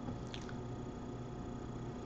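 Quiet room tone with a faint steady hum, and a faint click about a third of a second in.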